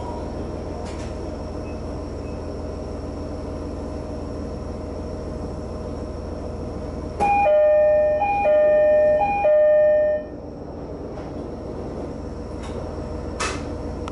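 JR Hokkaido H100 diesel-electric railcar standing with its diesel engine idling steadily. About seven seconds in, a two-note door chime sounds three times, a high note then a low note each time, lasting about three seconds.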